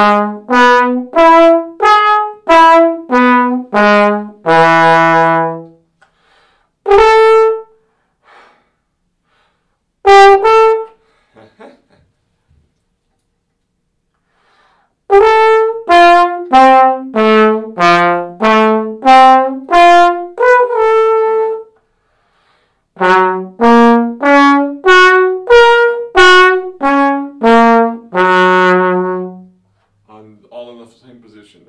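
Trombone playing an articulation exercise: three runs of separately tongued notes stepping up and down, each run ending on a longer held note. There are two single notes and short silences between the runs.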